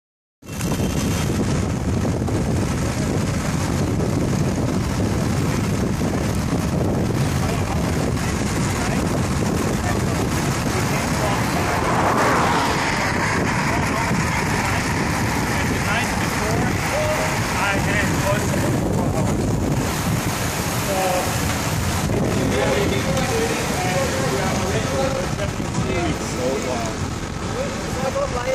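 Steady wind rushing over the microphone of a camera carried on a moving road bike, mixed with road noise, with faint voices in the second half.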